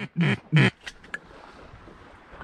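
Three quick duck quacks, each dropping in pitch, about a third of a second apart, followed by a couple of faint ticks.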